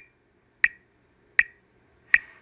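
Metronome clicking a steady beat of about 80 per minute: sharp, evenly spaced ticks about three-quarters of a second apart.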